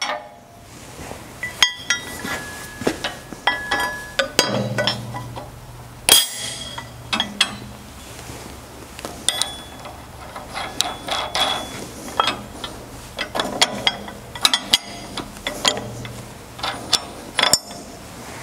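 Steel parts of a John Deere 50 series drill opener clinking and knocking against each other as the coil spring and firming wheel arm are worked onto the pivot pin by hand. The sound is irregular metallic clinks and taps, some ringing briefly, over a steady low hum.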